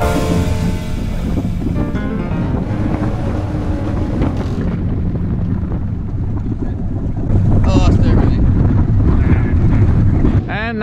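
Strong wind buffeting the microphone on an open boat over choppy water, getting louder about three-quarters of the way through. Music fades out in the first second or two.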